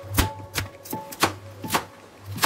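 Kitchen knife slicing through a shallot onto a cutting board: crisp chops at about two a second.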